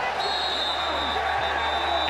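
Stadium crowd noise at a football game: a steady, even roar from the stands. A thin high whine joins just after the start.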